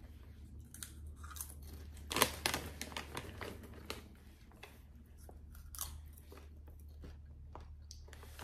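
A person chewing crunchy popcorn with the mouth closed: soft irregular crunches, the sharpest a little over two seconds in and another near six seconds.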